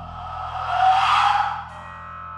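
Live improvised experimental music: a low held chord sounds underneath while a loud rushing, noisy swell rises about half a second in, peaks around a second in and dies away shortly after.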